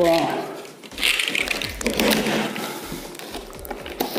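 A cardboard box being cut and pulled open by hand: a blade scraping through the packing tape, with the cardboard flaps rustling and scratching.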